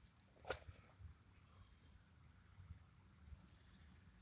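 Near silence, with one short sharp click about half a second in.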